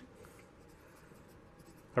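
Faint scratching of a pencil writing a word on paper.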